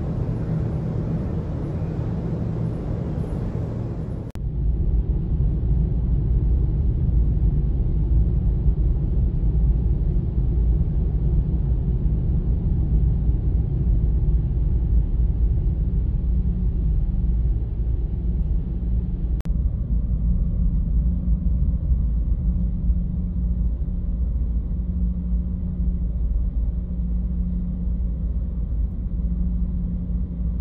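Low, steady rumble of a car ferry's engines and hull. It gets louder and deeper about four seconds in on the enclosed vehicle deck, and turns duller from about two-thirds of the way through.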